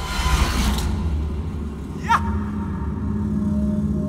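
Dramatic film background score: a heavy low rumbling drone, with a quick falling swoop about halfway through that settles into held low tones.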